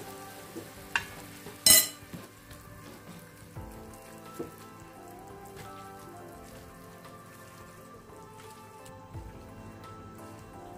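Boiled potatoes and fried onion sizzling faintly in oil in a frying pan while a potato masher chops and mashes them, metal knocking against the pan. A sharp clink comes a little under two seconds in.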